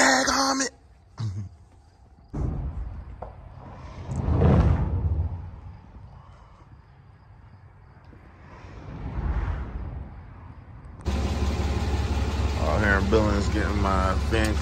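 Two vehicles pass on the highway, each swelling and fading away, the second about five seconds after the first. Near the end, the Peterbilt 379's Caterpillar diesel engine runs at a steady idle, heard close up at the open engine bay.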